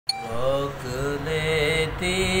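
A man singing the opening of an Urdu devotional song (naat) in a solo chanting style. He holds long, wavering notes that bend up and down in pitch.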